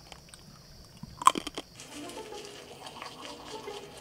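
A brief cluster of sharp crunching clicks just over a second in, followed by faint background music.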